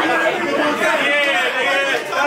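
Men's voices talking and calling out over one another, with crowd chatter; the words are not clear.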